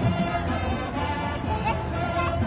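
High school marching band playing, heard live from the roadside with crowd chatter mixed in.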